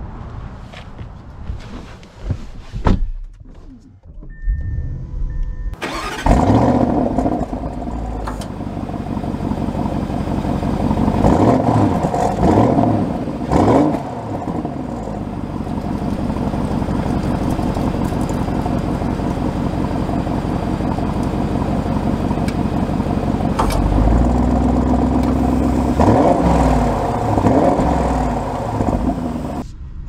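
2023 Audi SQ8's twin-turbo V8 started up, heard at the tailpipes. A few clicks and a short beep come first, then about six seconds in the engine catches with a flare of revs and settles into an idle. It is revved three times briefly around twelve to fourteen seconds, and held at higher revs again for a couple of seconds later on.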